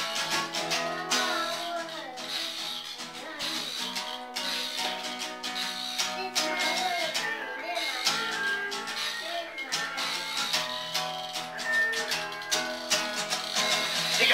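Acoustic guitar strummed in steady chords, an instrumental intro with an even strumming rhythm.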